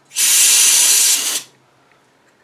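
Can of compressed air spraying in one hiss lasting a little over a second, blowing dust out of a gas log fireplace burner where the gas comes out.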